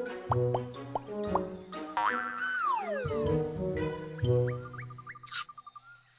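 Cartoon background music with comic sound effects: several quick rising pitch blips in the first second, a long falling glide around the middle, and a few more short rising blips near the end.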